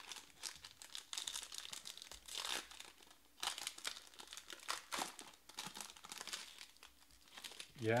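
Silver foil wrapper of a trading-card pack being torn open and crinkled in the hands, a quick, uneven run of crackles and rips.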